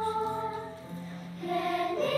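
Children's choir singing with keyboard accompaniment, holding long steady notes. The singing drops away briefly about a second in, then comes back stronger near the end.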